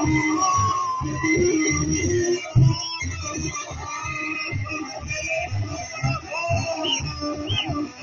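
Music with a steady, even beat and a melody line, with one sharp loud knock about two and a half seconds in.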